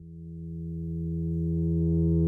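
A held low note or chord, steady in pitch with its overtones, swelling steadily louder as the opening of a rock song.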